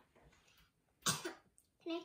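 A single short cough about a second in, followed near the end by a child starting to speak.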